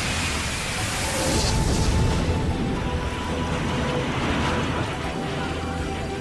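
Sound effects of a jet airliner collision and fireball: a dense rumbling roar that swells about one to two seconds in and then carries on steadily. Held tones of dramatic music sit underneath.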